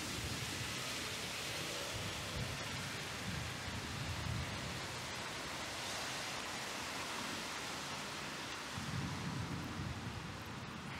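Heavy downpour: a dense, steady hiss of rain. Low rumbling swells sit underneath, one in the middle and a stronger one near the end, along with a van driving past on the wet road.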